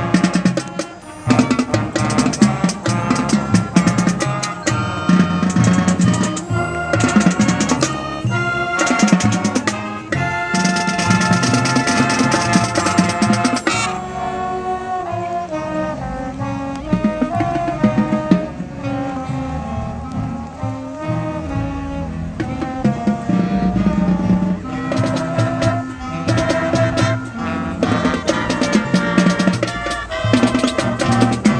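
High school marching band playing on the field: brass and saxophones over a drumline with dense drum strokes. About ten seconds in the band holds a loud chord for some four seconds, then a softer passage follows with fewer drum strokes, and the drums come back in strongly near the end.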